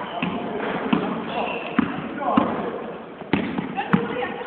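A basketball bouncing on a sports-hall floor, several sharp thuds about a second apart, under players' shouts and calls in the large hall.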